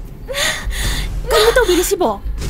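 A woman's distressed vocal sounds: a short gasp, then about a second later a longer, wavering cry.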